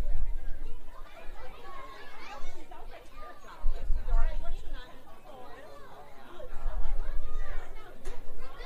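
Indistinct chatter of several voices, none clear enough to make out words, with bursts of low rumble on the microphone about four seconds in and again near the end.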